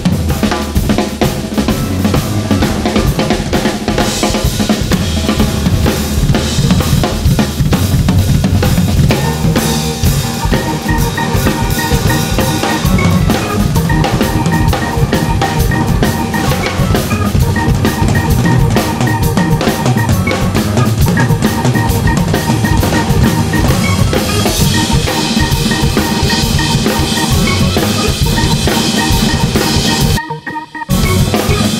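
Several drum kits playing a busy groove together, with bass drum, snare and cymbals, while an electronic keyboard plays along; the keyboard notes come through more clearly from about ten seconds in.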